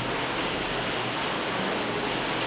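Steady, even hiss of background noise between spoken phrases, with no distinct sound standing out.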